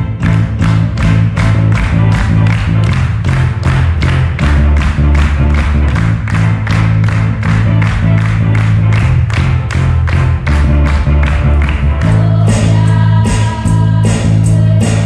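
Live worship band music: a drum kit keeps a steady beat of about four strokes a second over bass-guitar notes, with voices singing along.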